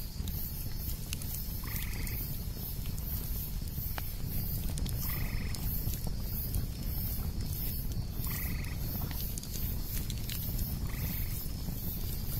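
A frog calling four times, one short call about every three seconds, over the crackle of a campfire and a steady low rumble. A high sound pulses about twice a second throughout.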